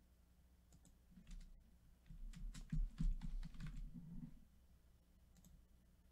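Typing on a computer keyboard: a quick flurry of keystrokes for about three seconds in the middle, with a few single clicks before and after.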